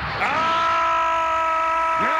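A man's long yell, sliding up just after the start and then held on one steady pitch.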